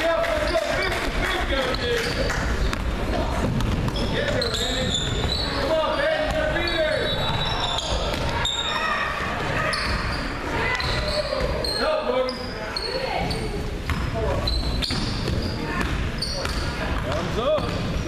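Basketball game on a hardwood gym floor: the ball bouncing on the boards and sneakers squeaking in many short high chirps, with voices of players and spectators, all echoing in the large hall.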